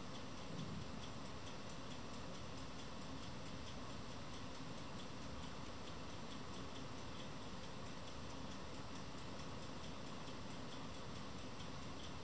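Faint, steady room hiss with a soft, regular high-pitched ticking, several ticks a second, running evenly throughout.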